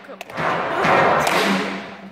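A children's brass band of cornets, tenor horns and plastic trombones playing one held phrase that begins just after a short break, swells, then dies away near the end.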